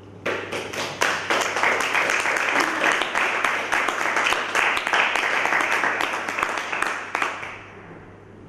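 Audience applause: many hands clapping together, starting sharply just after the start and dying away near the end.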